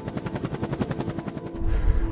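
Helicopter rotor chop, a rapid even beat of roughly a dozen pulses a second. About one and a half seconds in, it gives way to a loud low rumble.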